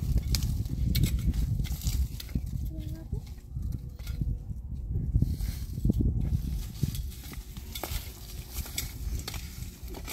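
Loose rocks being lifted and set down by hand: repeated knocks of stone on stone and scraping of gravel and dirt, over a low rumble.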